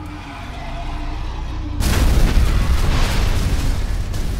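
Explosion sound effect. A low rumble builds for nearly two seconds, then a sudden loud blast breaks in and carries on as a long rumble while the stone wall is blown apart.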